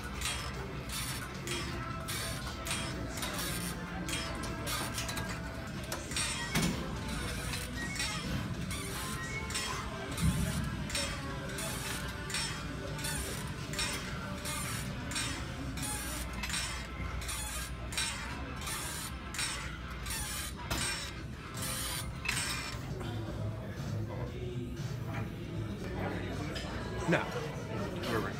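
Background music with a steady beat, over the clinking and rattling of pec-deck fly machine weight stacks and pivots being worked through reps.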